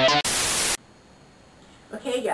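The rock guitar intro music cuts off, and a half-second burst of white-noise static follows as a transition effect. Then there is only faint room tone.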